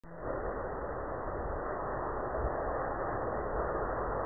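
Open-air background noise: a steady hiss with faint, uneven low rumbling underneath.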